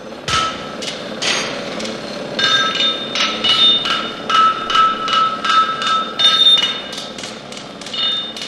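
Repeated metal-on-metal hammer strikes, irregular and several a second, each leaving a ringing tone.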